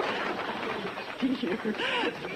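Audience applause tapering off in the first second, then voices in the crowd.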